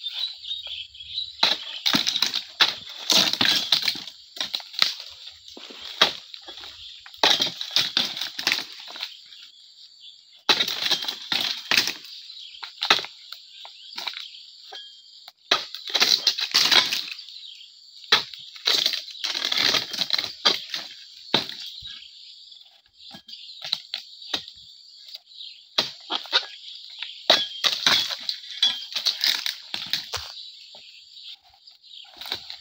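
Dodos chisel on a long pole jabbed into the frond bases of an oil palm: cracking chops and the rustle of heavy palm fronds, in bursts of strikes with short lulls between.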